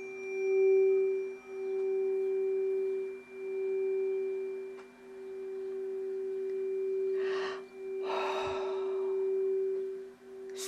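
A tuning fork rings with one steady tone whose loudness swells and fades in slow waves, without being struck again. Near the end comes a breath drawn in twice.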